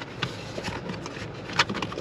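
Handling noise: a black leather liner mat being rubbed and slid around in a curved plastic storage tray, with a few light taps, once just after the start and again near the end.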